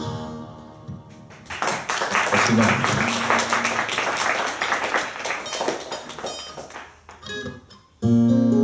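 Twelve-string acoustic guitar: a chord rings and fades, then about a second and a half in, fast rapid strumming starts and runs for several seconds. It thins out to a few single plucked notes near the end.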